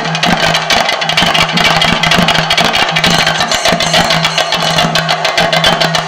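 Fast, dense Theyyam percussion: chenda drums and small hand cymbals played in rapid strokes, over a steady low hum that drops out briefly now and then.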